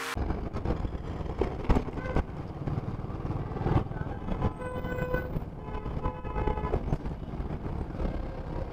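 Congested street traffic heard from a motorcycle, with a steady low traffic rumble, a few sharp knocks, and vehicle horns honking briefly around the middle and in the second half.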